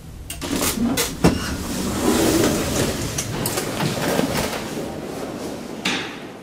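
Asea-Graham traction elevator coming to a stop at a floor: the low hum of the travel fades, a few sharp clicks follow, then the automatic inner car doors open with a long rattling slide, and there is another click near the end.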